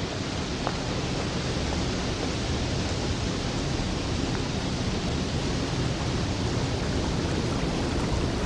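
A steady, even rushing noise, like a wind or water hiss, with a faint tick or two.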